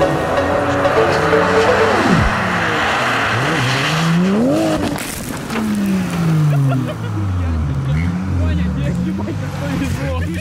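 Drift cars' engines revving on an ice track, the pitch climbing and falling several times as the throttle is worked. A rushing noise runs through the first half, and a voice is heard.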